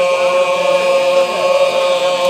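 A group of men singing together unaccompanied, holding one long, steady note.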